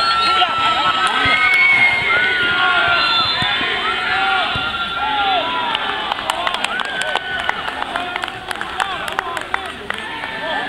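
Several voices of futsal players and onlookers shouting and calling out over one another. In the second half a quick run of sharp taps comes through under the voices.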